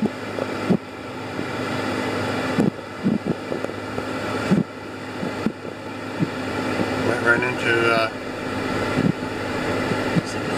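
Inside a car driving slowly along a town street: a steady engine and fan hum that swells and drops back every two seconds or so, with scattered knocks and rattles. A brief wavering pitched sound comes in about seven seconds in.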